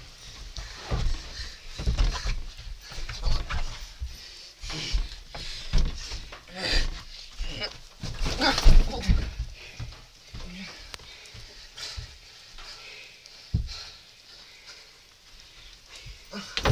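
Scuffling and irregular thumps of people wrestling on a mattress, with grunting; the loudest burst comes about nine seconds in.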